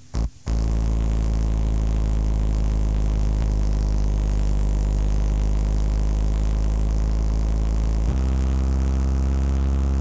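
A steady, low electronic synthesizer drone with many overtones, the musical bed of a radio station jingle, starting after a brief click about half a second in; its tone shifts at about eight seconds.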